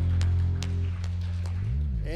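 A worship band's closing chord held and ringing out: the higher notes die away about a second in, leaving low sustained notes.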